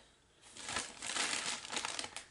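Crinkling, rustling sound of a crinkly material being handled, starting about half a second in as a dense run of small crackles.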